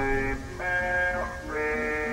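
Instrumental music: a melody of held notes, each lasting under a second, over a repeating low bass line.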